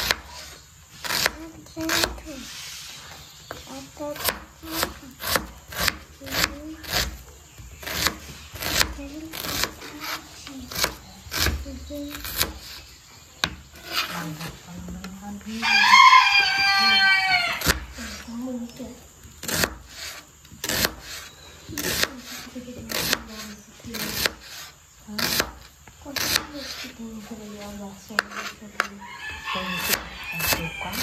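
Kitchen knife chopping an onion on a plastic cutting board: a steady run of sharp knocks, about one or two a second. About halfway through, a rooster crows once, loud and lasting about two seconds.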